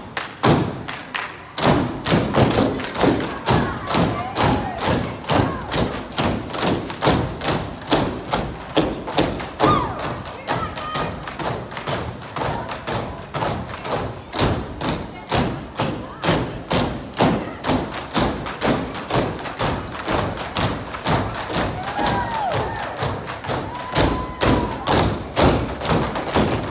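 Jump ropes slapping a stage floor and jumpers' feet landing, in a steady rhythm of about two to three hits a second.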